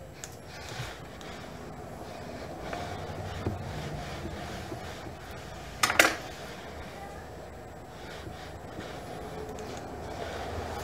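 Clothes iron being slid and pressed along iron-on wood edge banding on a plywood panel edge: low rubbing and handling noise over room tone, with one brief sharp knock about six seconds in.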